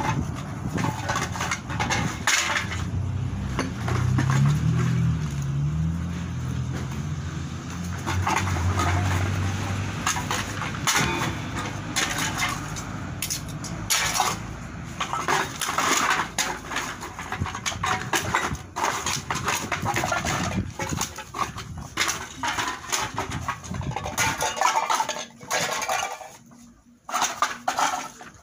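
Plastic bottles, cans and plastic bags being rummaged and sorted by hand: irregular clinks, clatters and crinkling rustles. A low hum runs under the first ten seconds or so.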